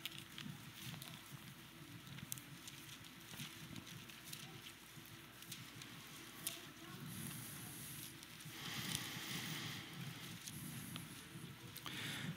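Faint rustling of thin Bible pages being turned, with scattered light clicks and a fuller rustle about nine seconds in, as the passage is looked up.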